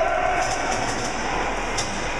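Ice hockey rink din during play: a steady wash of noise with a few short, sharp clicks from skates and sticks on the ice, and a shout trailing off at the start.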